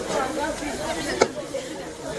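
Several people talking at once in overlapping chatter, with one sharp click a little past halfway.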